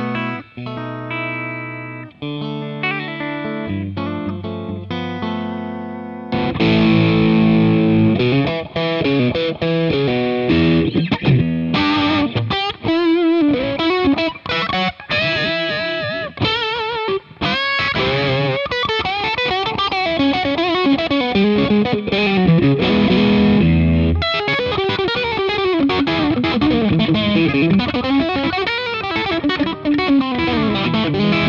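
Fender Custom Shop Wildwood "10" 1957 Stratocaster electric guitar played through an amp in the number two pickup position (bridge and middle pickups together). It starts with separate chords, then about six seconds in turns louder and grittier, with fast lead lines, string bends and vibrato.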